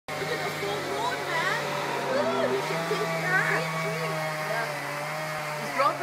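Chainsaw running steadily as it cuts into a tree trunk, its engine note stepping up slightly in pitch about halfway through.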